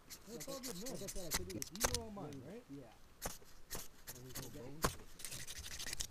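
Several sharp, raspy scrapes of a ferro rod being struck to throw sparks onto tinder, over men's voices talking in the background.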